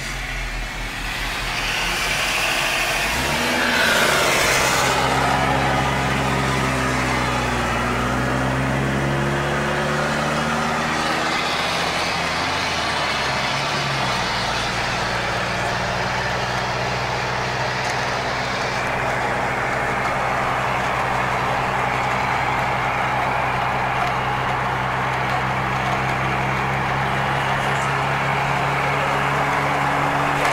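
Motor-vehicle engine and road noise heard from inside a moving car. About four seconds in it gets louder, and its pitch rises and falls for the next ten seconds or so before settling to a steady cruising note.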